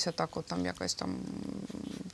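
A woman speaking, then her voice trailing into a drawn-out, creaky hum held at one pitch for about the last second, a hesitation sound between phrases.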